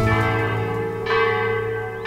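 Church tower bells ringing, a new bell struck about once a second, each note ringing on under the next.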